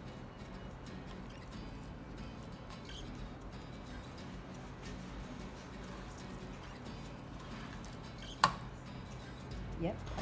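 Faint handling sounds of hands rubbing spice seasoning into raw chicken breast on a plastic cutting board and shaking a spice jar, over a steady low hum. One sharp click about eight and a half seconds in.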